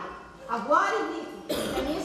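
A woman's voice with words drawn out on sliding pitch, broken about one and a half seconds in by a harsh, breathy burst like a cough.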